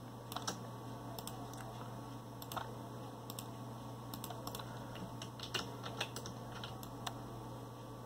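Computer mouse and keyboard clicks: a dozen or so light, irregular clicks, with a steady low hum underneath.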